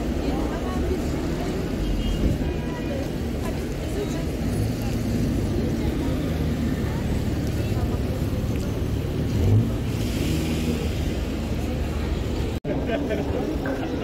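City street traffic at close range: vehicle engines running, with a steady low rumble, under the chatter of passers-by. The sound drops out for a moment near the end, then street voices carry on.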